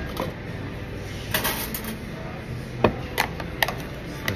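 Short, sharp clicks and taps of utensils and a plastic container being handled on a counter: a quick cluster about a second and a half in, then single taps near the end, over a steady low background hum.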